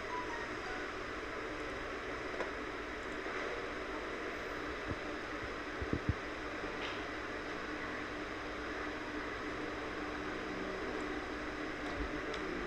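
Steady low hiss of room and microphone noise, with a few soft, separate clicks from the computer's mouse and keyboard.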